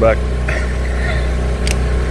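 An engine idling steadily with a constant low hum, and a single light click near the end.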